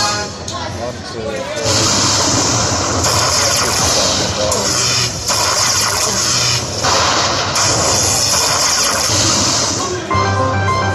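Poker machine sound effect: a loud hissing, crackling noise, like electric static, starting about two seconds in and running in long stretches with two brief breaks, as a lightning bolt flashes across the reels.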